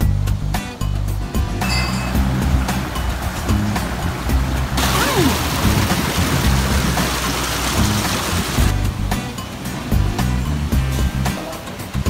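Background music with a steady, stepping bass line, joined for a few seconds in the middle by a loud even rushing noise.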